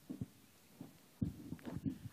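A few faint, low thumps and bumps in a quiet room, irregularly spaced and clustering in the second half, just before a voice starts.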